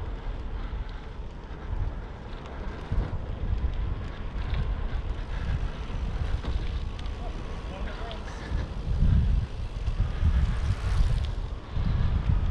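Wind buffeting the microphone of a bike-mounted camera as it rides along a paved trail: a low rumbling noise that gusts up and down, loudest about nine seconds in.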